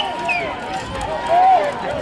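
Distant spectators' voices calling out across an outdoor track, over a steady background of outdoor noise.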